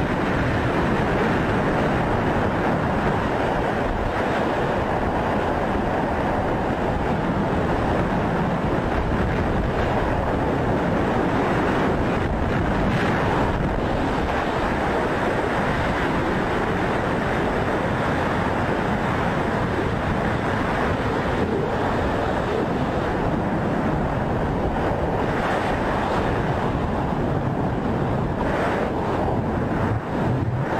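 Rushing air over a body-mounted camera's microphone during a base jump flight: a steady, loud wind roar throughout.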